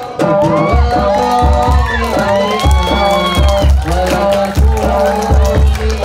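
Hadroh ensemble of Islamic frame drums (rebana) with a deep bass drum kicking in about a second in and beating a rhythm, under many voices calling and cheering together.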